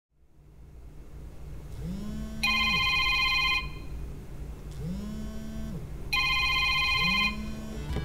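Smartphone ringing with an incoming call: two short phrases of an electronic ringtone about three and a half seconds apart, with a low hum that rises, holds and dies away three times between and under them.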